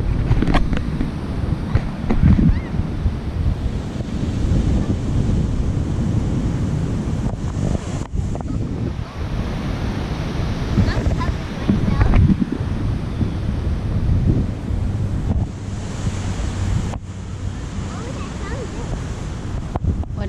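Wind buffeting the camera microphone over the steady wash of ocean surf, with stronger gusts about 2 seconds and 12 seconds in.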